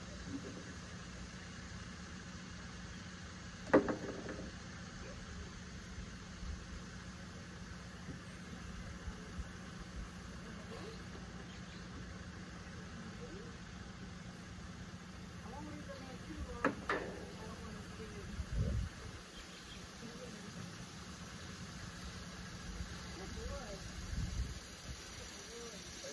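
An engine idling steadily with a low hum, which cuts out about two-thirds of the way through. A single sharp knock sounds about four seconds in, the loudest moment, and a smaller one comes near the middle.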